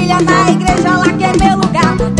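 Forró gospel band music from a live recording, with a steady drum beat under sustained bass notes and a bending melody line.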